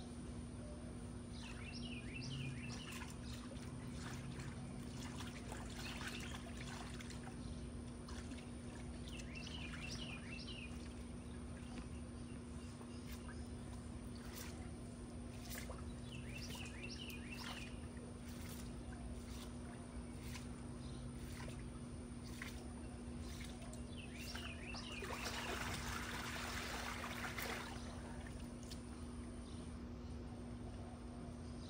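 Water in an above-ground pool trickling and splashing as a person moves through it, louder for a couple of seconds near the end. Short chirps recur every few seconds over a steady low hum.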